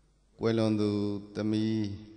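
A Buddhist monk's voice chanting in two long phrases held at a level pitch, starting about half a second in after near silence.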